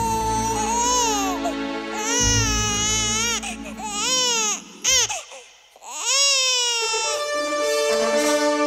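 Newborn infant crying in a run of rising-and-falling wails, with a short break just after the middle, over held background music.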